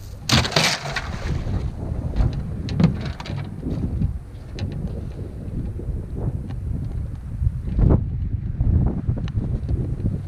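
A cast net thrown from a boat lands on the water with a splash about half a second in, then is hauled back in hand over hand by its rope, with scattered small splashes and clicks. Wind buffets the microphone throughout.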